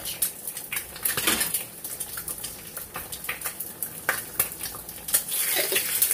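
Metal spoon clinking and scraping against a saucepan while stirring seasoning into boiling ramen broth: irregular light clicks over a soft, steady frying sizzle.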